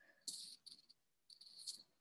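Near silence, broken by three faint, short bursts of high-pitched chirping.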